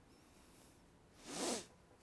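A man's short, sharp in-breath into a lapel or podium microphone about a second and a half in, taken just before he speaks again, over near-silent room tone.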